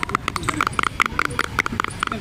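Long fingernails tapping rapidly on a small white plastic cosmetic jar, a quick irregular patter of light, crisp clicks.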